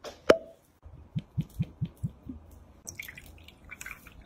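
A wooden-knobbed stopper pulled from a glass bottle with a sharp pop and a short hollow ring. Liquid then glugs out of the bottle into a glass, about six glugs in just over a second. A softer splashing pour follows near the end.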